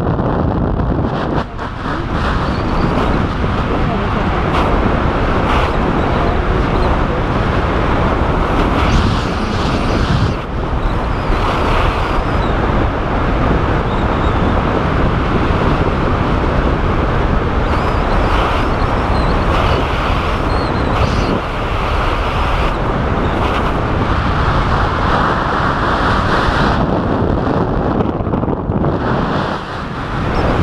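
Loud steady wind rushing over the camera microphone under an open tandem parachute, rising and falling in gusts as the canopy banks through steep turns.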